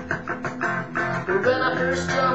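Fender Stratocaster electric guitar with a maple neck playing repeated strummed rhythm chords.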